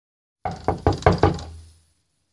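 Knocking on a door: five quick knocks over about a second.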